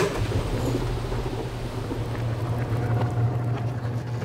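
Garage-door-opener motor running, driving a roller chain over sprockets to roll the observatory's roof open. It starts up at once as a steady low hum with a mechanical whir over it.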